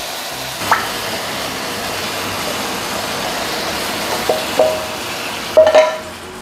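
Rice frying in oil sizzles steadily as spice-and-turmeric water is poured into the hot pan. A few short clinks and knocks from the bowl and wooden spatula against the pan, the loudest near the end.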